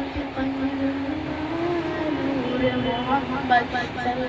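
A boy singing a naat without accompaniment, drawing out long held notes that step slowly up and down in pitch, with no clear words.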